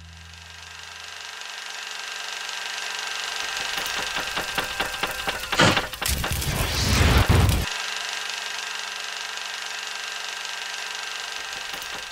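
Machine-like whirring noise with a steady thin whine, broken by a louder rattling, crackling stretch about halfway through.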